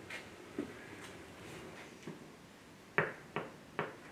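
Quiet room with a couple of faint knocks, then four sharp clicks or taps in quick succession near the end.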